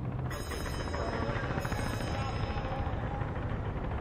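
The soundtrack of an animated series playing: a steady low rumble with music over it.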